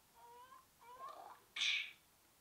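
A woman crying, with high wavering whimpering wails that rise in pitch, then a short, loud noisy burst near the end.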